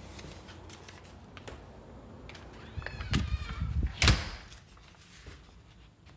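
A house cat meowing briefly about three seconds in, then a loud sharp thump just after four seconds.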